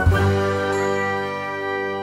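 The final chord of a short channel intro jingle: struck right at the start, it holds as a bright, bell-like ringing chord and slowly fades.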